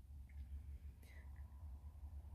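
Near silence: room tone with a steady low hum and a faint steady tone, and two brief faint sounds about a third of a second and a second in.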